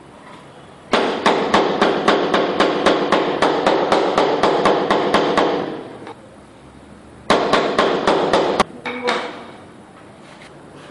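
Rubber mallet tapping ceramic floor tiles down into the mortar bed to seat and level them: a fast run of about four to five strikes a second for several seconds, then a shorter run of about seven strikes and a couple of last taps near the end.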